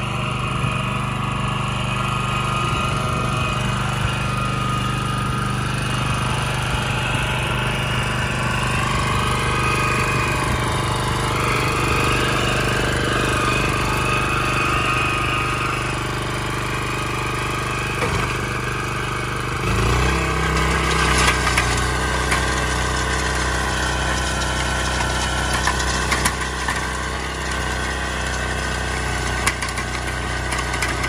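Engine of an 8-horsepower Iseki walk-behind tiller running steadily while its bed-forming attachment works the soil. About twenty seconds in, the engine's note changes to a deeper one.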